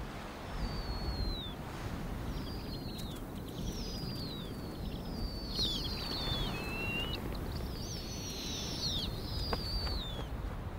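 A series of high, thin, downward-sliding bird chirps, several overlapping, over a steady low rush of wind.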